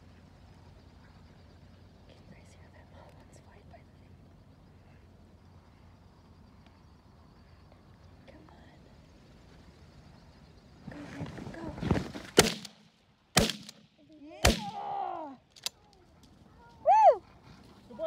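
Three shotgun blasts about a second apart, fired at mallards over the decoys, with voices rising just before and after the shots. Before them, a long stretch of faint, steady field ambience.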